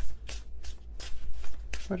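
A deck of tarot cards being shuffled by hand: a run of short, irregular shuffling swishes, with a word spoken near the end.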